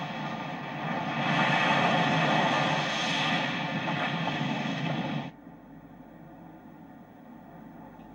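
Ocean surf washing on a beach as a steady rush of noise. It swells about a second in, then cuts off abruptly about five seconds in, leaving only a faint hiss.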